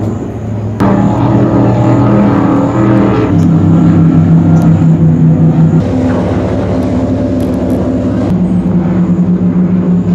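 High-performance powerboat engines running at speed, a loud steady drone with a fast pulse in it. The sound changes abruptly every two to three seconds as the footage switches from one passing boat to the next.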